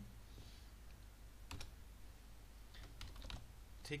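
Quiet keystrokes on a computer keyboard as a new line of code is typed: a single keystroke about one and a half seconds in, then a quick run of several near the end.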